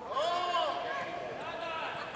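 Indoor volleyball arena during a rally: a drawn-out, wavering call or cheer over the hall's steady background murmur.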